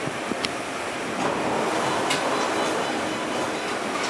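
KORAIL Airport Railroad electric train heard from inside the car, moving slowly alongside a station platform: a steady rumble and hiss of running gear, with a couple of sharp clicks.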